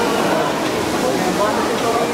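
Busy restaurant din: a steady, loud background noise with indistinct chatter in it.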